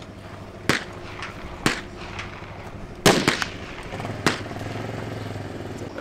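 Gunfire from a shooting range: four separate sharp shots about a second apart, the third the loudest.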